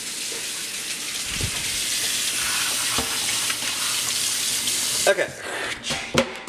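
Kitchen faucet running into a sink while a mesh strainer is rinsed: a steady rush of water with a couple of light knocks. The water stops about five seconds in.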